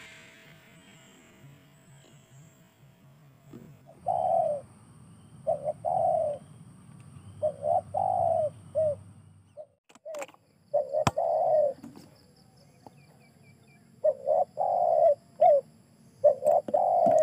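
A dove cooing: low, short, arched coos repeated in clusters of two or three. A faint high chirping runs behind it, and there is a single sharp click about eleven seconds in.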